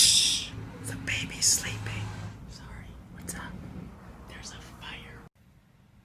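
A man whispering close to the microphone: breathy words that grow fainter, then cut off abruptly about five seconds in.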